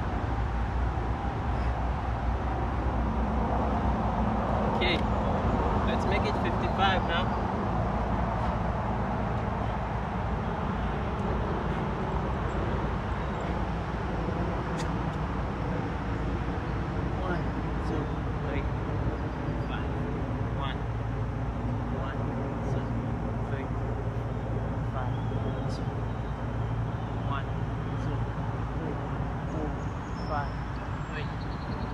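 Outdoor ambience: a steady low rumble of distant road traffic, with faint short high chirps now and then.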